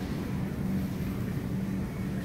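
Steady low hum and rumble of supermarket background noise, with a few steady low tones and no distinct events.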